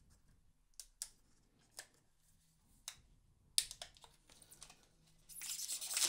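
Clear plastic protective film being peeled off a smartphone: a few faint clicks and crinkles of handling, then a sharp click about three and a half seconds in and a louder crackling peel of the film over the last second or so.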